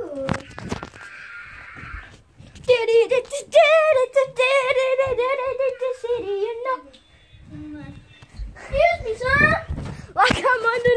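A child's voice held on one long, wavering note for about four seconds, sing-song or drawn-out like a yell, then a shorter rising call near the end. A few knocks come early on.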